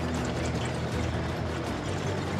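Small excavator's diesel engine running steadily as it carries a suspended load, under background music.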